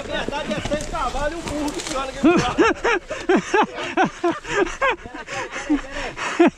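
Men's voices: short, clipped vocal calls, a few a second, loudest between about two and five seconds in.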